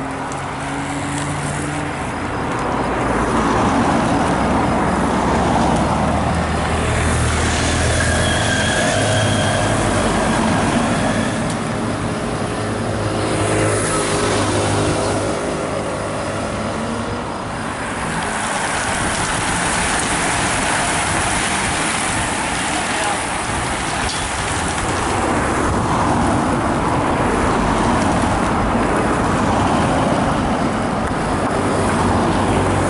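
Race convoy vehicles, cars and a motorcycle, driving past close by behind a cycle race. The engine hum and tyre noise swell a few seconds in and stay up for several seconds, ease off, then build again.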